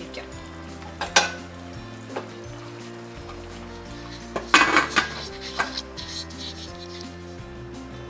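A wooden spatula knocks and scrapes against an aluminium pressure cooker as the chicken is stirred, then the cooker's metal lid is set on and closed with a clatter about halfway through. Background music plays throughout.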